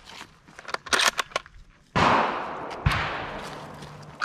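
A few sharp clicks around one second in, then two gunshots about a second apart, each followed by a long fading echo.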